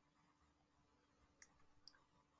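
Near silence, with two faint clicks about a second and a half in.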